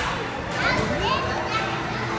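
Children playing and calling out in a busy hall: a steady hubbub of young voices, with a few high-pitched rising calls from about half a second to just over a second in.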